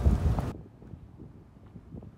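Wind buffeting the phone's microphone, cut off abruptly about half a second in. After that only faint scattered taps remain, footsteps of someone walking on a gravel lot.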